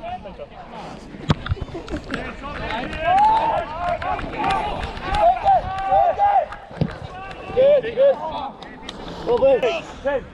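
Distant men's voices shouting calls across a rugby pitch, several short shouts in a row from about three seconds in, with soft footfalls and knocks in the first couple of seconds.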